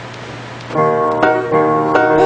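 Piano chords struck one after another, starting just under a second in, each ringing on until the next.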